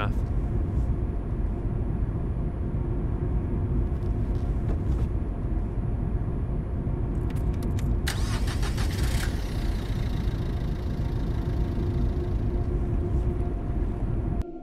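A car running, heard from inside the cabin as a steady low engine and road rumble. A short burst of brighter noise comes about eight seconds in.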